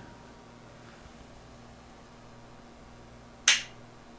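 A single sharp click about three and a half seconds in as the Drake L-4B linear amplifier's front-panel switch is flipped to the high-voltage position, over a faint steady low hum.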